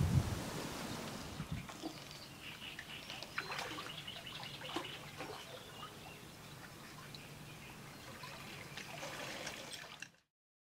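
Lake water trickling and lightly splashing as a carp is released from a wet sling into shallow margin water, with a few small knocks. A low rumble in the first second and a half.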